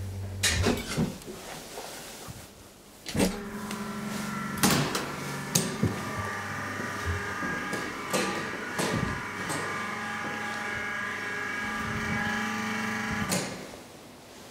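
The steady low hum of a hydraulic elevator in motion stops about half a second in as the car halts. Clicks and knocks follow as the manual landing door is unlatched, pushed open and swings shut, with further knocks and a steady hum of several tones from about three seconds in.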